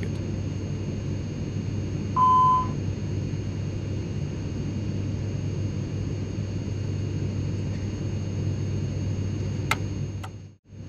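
Airliner flight-deck background, a steady low rumble and hum, with one loud half-second beep about two seconds in: the A320's cockpit alert tone that sounds with the ENG 1 THR LEVER FAULT ECAM warning. A short click near the end as a cockpit pushbutton is pressed.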